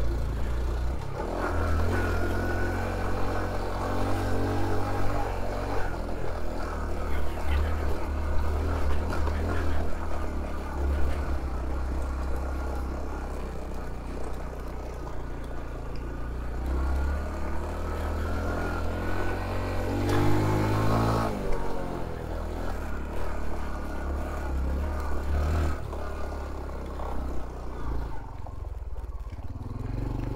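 Honda CT125 Trail's 125 cc single-cylinder four-stroke engine running under load on a climb, its note rising and falling with the throttle, with a strong rev-up about two-thirds of the way through.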